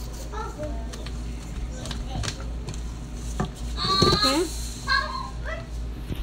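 Children's voices in the room: chatter and high-pitched calls, loudest with a raised call about four seconds in. A few sharp knocks are heard, over a steady low hum.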